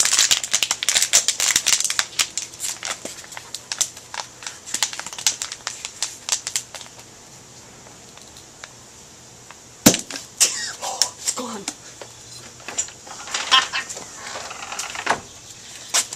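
Thin plastic water bottle being twisted tight, crackling and crinkling for several seconds as the air inside is compressed. About ten seconds in comes a single sharp pop, the loudest sound, as the pressurised air shoots the screw cap off the bottle.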